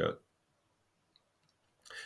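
The tail of a spoken word, then a pause of near silence with a few faint mouth clicks and a soft breath near the end.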